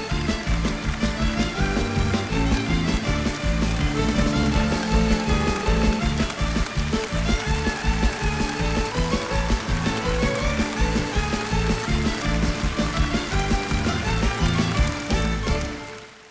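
Live band playing an instrumental passage with drum kit, the music fading out quickly at the very end.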